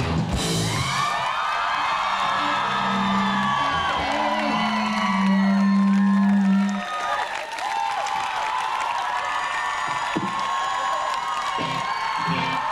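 A live rock band ends a song: a crash, then a few long low notes held in steps that cut off about seven seconds in. An audience cheers, whoops and whistles throughout and keeps cheering after the music stops.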